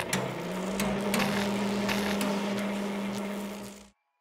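An animated-logo sound effect: a steady low hum under a dense hiss, with scattered sharp clicks and crackles. It starts abruptly and cuts off suddenly just before the picture goes black.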